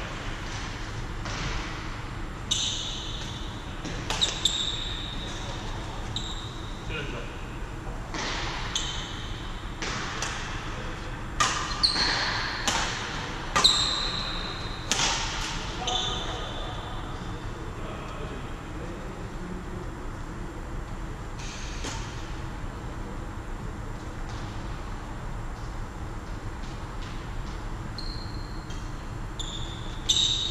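Doubles badminton played in a large sports hall: sharp racket strikes on the shuttlecock and short squeaks of court shoes on the sports floor, echoing in the hall. The hits and squeaks come thick and fast in the first half, then thin out after about sixteen seconds.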